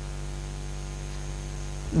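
Steady electrical mains hum with a faint hiss in the recording, unchanging throughout; a man's voice begins right at the end.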